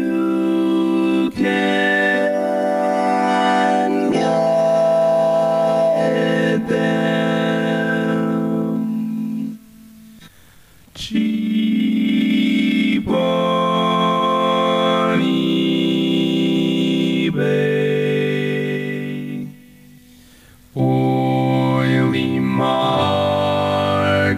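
Vocoded voice through an Electrix Warp Factory vocoder, singing sustained, organ-like chords that change every second or two. It comes in three phrases, broken by short pauses about ten and twenty seconds in.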